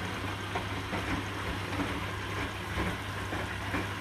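Hotpoint NSWR843C front-loading washing machine in its final rinse: the drum turns wet laundry through water over a steady motor hum. Irregular splashes and knocks come as the load tumbles.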